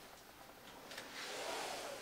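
Puppies wrestling on a blanket: a light tap about a second in, then about a second of soft, breathy hissing noise without a clear pitch.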